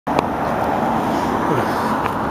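A car driving past close by on a city street: steady engine and tyre noise, with one short click just after the start.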